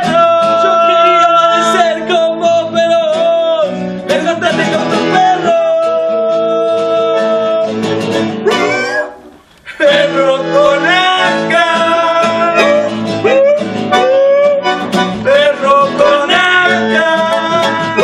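Acoustic guitar strummed together with a bandoneón playing sustained reed notes and melody, a lively folk song performed live. The music breaks off briefly about nine seconds in, then resumes.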